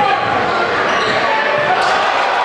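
Live gym sound of a basketball game: a crowd of voices echoing around a large hall, with a basketball bouncing on the hardwood. A sharp hit sounds near the end as the dunk comes down.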